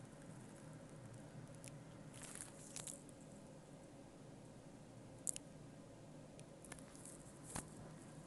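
Near-quiet room tone with a few faint handling clicks and rustles. The sharpest click comes about five seconds in, and another comes near the end.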